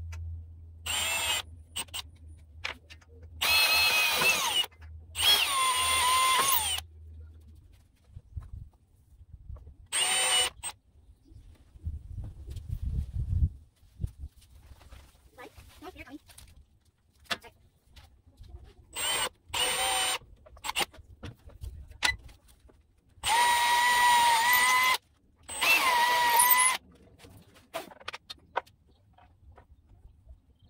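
Cordless drill boring handle holes through a wooden cabinet door with a 3/16-inch bit guided by a drilling jig. It runs in short bursts of one to two seconds, about eight times, its motor whine rising as it spins up each time.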